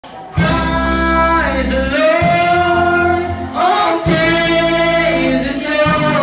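Live band performance: a male and a female singer sing long held notes into microphones over the band, with steady low bass notes underneath, heard loud through the PA. The music starts about half a second in.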